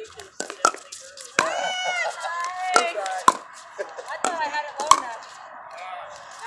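Pickleball paddles hitting a hard plastic ball during a rally: a string of about seven sharp, irregularly spaced pocks.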